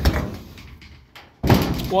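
Knock of a wooden rabbit-pen frame and its corrugated metal lid being handled, with a second, noisier clatter about a second and a half in.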